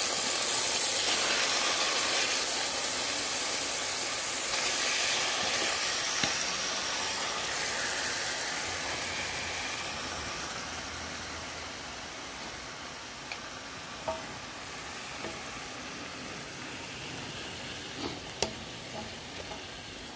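Pork loin chops frying with onions and green peppers in a pan, a steady sizzle that slowly dies down. A few light clicks come in the second half.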